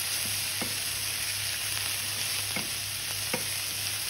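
Diced potatoes, onions and carrots sizzling steadily in a stainless steel frying pan on high heat, stirred with a wooden spoon that knocks against the pan three times.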